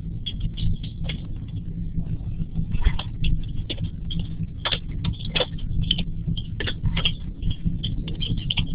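A steady low hum with irregular light clicks and taps, several a second, picked up by an open microphone in an online meeting.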